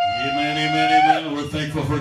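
A man's voice holds one long high note of praise for about a second and a half after scooping up into it, with a lower held note under it. Speech begins near the end.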